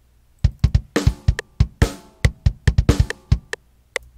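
Sampled rock drum kit from FL Studio's FPC sampler: a quick, uneven run of about twenty hits, mostly deep kick-drum thumps with some snare and a few longer cymbal crashes, part of a kick-drum fill at the end of the pattern. It stops shortly before the end.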